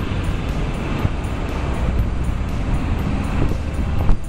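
Steady road and engine noise of a moving vehicle, with wind buffeting the microphone.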